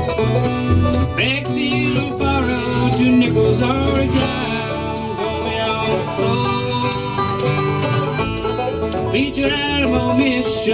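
Bluegrass string band playing an instrumental passage: harmonica wailing with bent, wavering notes over strummed mandolin, acoustic guitar and rolling banjo.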